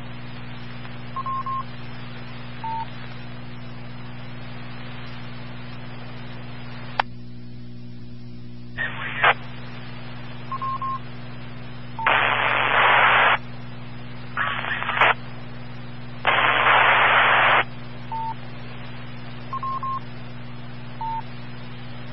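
Scanner feed of a 2-metre amateur radio repeater between transmissions: a steady hum under short high beeps that come every few seconds, some in pairs. About halfway through, three loud bursts of static hiss come as stations key up without speaking clearly.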